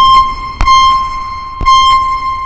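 Behringer Neutron analog synthesizer sounding a bright, high, held tone, re-struck three times with a sharp click at each attack and fading between hits.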